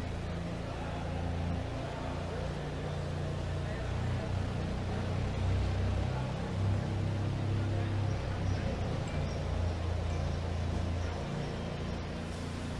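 A steady, low mechanical hum, like an engine running, whose pitch shifts slightly a few times.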